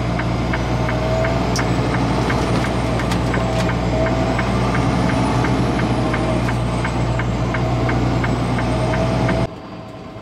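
Semi truck cab on the move on a wet road: a steady engine drone and road noise, with a light ticking about three times a second. The sound drops abruptly to a much quieter background near the end.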